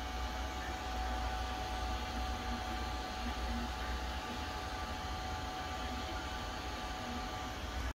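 Steady machine noise: an even, fan-like hiss over a low hum, with a couple of faint steady tones, unchanging throughout.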